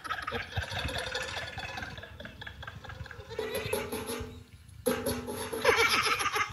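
People laughing heartily, with a couple of long, drawn-out laughing cries in the second half.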